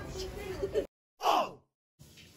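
A person's laughing voice, cut off suddenly by an edit into silence. A moment later comes one short voice-like sound falling steeply in pitch, like a sigh.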